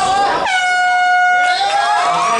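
Air horn blown once in a single steady blast of about one second.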